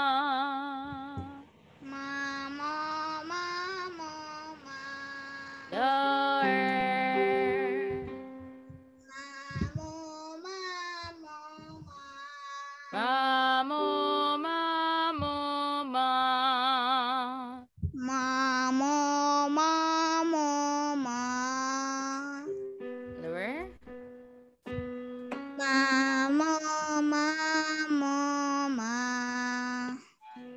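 A child and a woman singing vocal warm-up scales: short phrases of notes stepping up and down with vibrato, separated by brief pauses. A quick rising vocal slide comes about three quarters of the way through.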